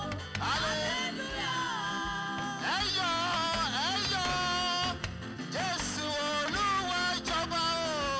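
Live worship music: a lead singer sings into a handheld microphone over band accompaniment, the voice sliding up and down between held notes.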